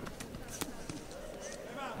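Quiet fight-arena ambience with distant voices and two sharp knocks in the first second, about half a second apart.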